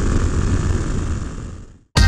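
Wind rushing over the microphone with the single-cylinder engine of a 2018 Suzuki DR-Z400SM supermoto running underneath while riding. It fades out to silence near the end.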